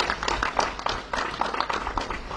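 Applause: a group of people clapping their hands, a dense irregular patter of claps.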